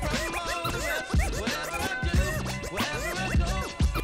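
Vinyl scratching on a turntable: the record is pushed back and forth by hand, giving quick rising-and-falling pitch sweeps chopped up by crossfader cuts, over a backing beat.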